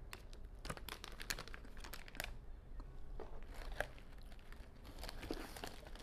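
Plastic snack bag crinkling as it is handled, a scatter of short crackles, denser in the first couple of seconds.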